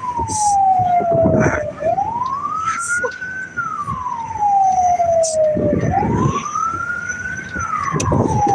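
Siren wailing, a single tone that rises over about a second and a half and falls over about two seconds, repeating slowly, over rumbling engine and wind noise from the moving vehicle.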